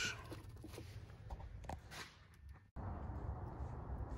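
Faint scattered clicks and handling noise from a hand working the plug of an ignition coil. About three-quarters of the way through, the sound cuts off abruptly and gives way to a low steady background noise.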